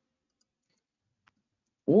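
Near silence with one faint click about a second in, then a man's voice starts near the end.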